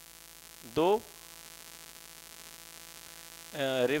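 Steady electrical mains hum with many even overtones. A man's voice speaks one short word about a second in and starts another near the end.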